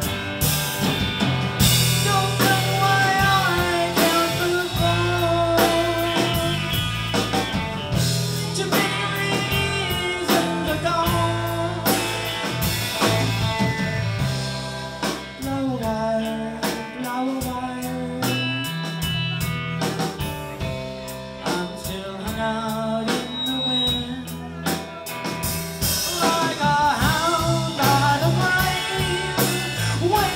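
Live rock music: electric guitar played over drums, with bending lead lines; the music eases off a little in the middle and builds up again near the end.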